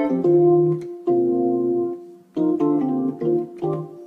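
Electronic keyboard playing a series of held multi-note chords, a new one about every second, each played note turned into several notes by a MIDI harmonizer that rotates the voicing from one strike to the next.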